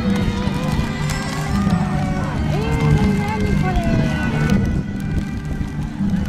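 Music with a repeating low bass line, mixed with many children's and adults' voices calling out.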